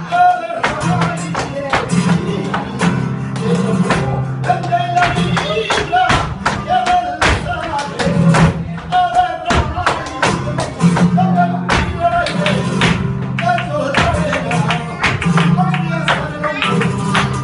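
Live flamenco alegrías: a flamenco guitar playing, with dense, sharp hand-clapping (palmas) and percussive strikes beating out the rhythm.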